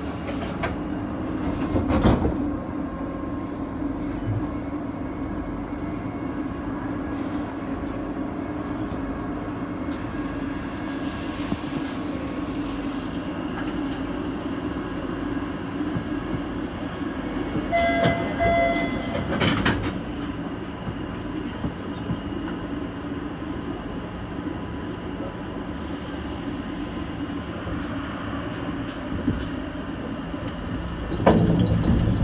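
Steady hum of an older MBTA Red Line subway train standing in the station, with a few knocks and short beeps about two-thirds of the way through.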